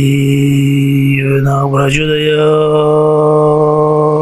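A man chanting a mantra in long held notes. A short gliding change in the voice comes just before it moves to a second, slightly higher held note about halfway through.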